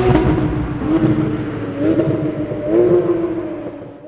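High-performance car engine and exhaust revving, its pitch swinging up in three short surges about a second apart, then fading out near the end.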